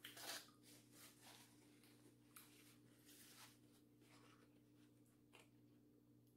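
Near silence: faint eating and handling noises, soft chewing and the light rustle of a fork and napkin, loudest just at the start, over a low steady hum.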